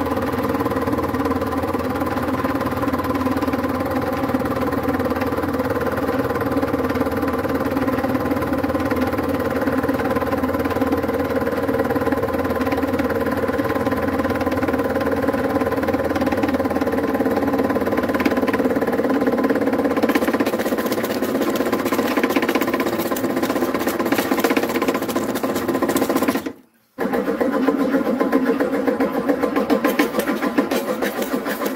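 Hydraulic press running with a steady, loud pump hum as the ram pushes a perforated plate down into a steel cylinder. Later a crackling, hissing noise joins as the contents are squeezed and liquid is forced out around the ram. The sound cuts out for a moment near the end.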